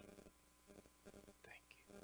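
Near silence: room tone, with a faint whisper about one and a half seconds in.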